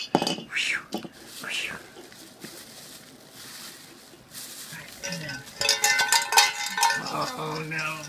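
Small metal jingle bells being shaken, a bright clinking jingle that comes and goes, densest and loudest in a burst about six seconds in. A person's low voice sounds briefly near the end.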